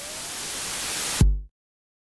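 Synthesized transition sound effect: a hissing white-noise riser that swells louder, cut off a little past halfway by a short, deep boom that drops in pitch and fades out.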